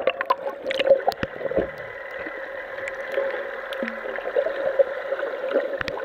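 Muffled underwater sound picked up by a camera held below the surface: a steady faint hum under a soft wash of water, with scattered small clicks and crackles.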